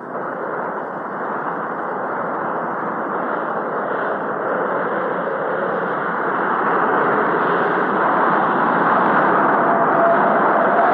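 Storm wind sound effect: a steady rushing noise that grows gradually louder as the storm builds.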